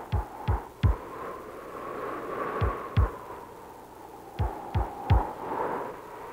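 Deep, heavy thumps, each dropping in pitch, in groups of two or three like a heartbeat, over a steady hum on the film's soundtrack.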